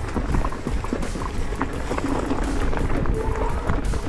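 Mountain bike rolling over a rough, stony trail: a steady low rumble from the tyres and wind on the microphone, with a quick run of small rattles and clatters from the bike, under background music.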